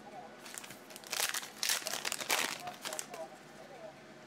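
Wrapper of a trading-card pack crinkling and tearing as it is opened by hand, in two short bursts about a second in and again around the middle.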